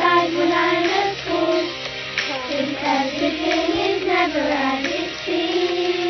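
A child singing a melody over instrumental backing music, the voice gliding between held notes.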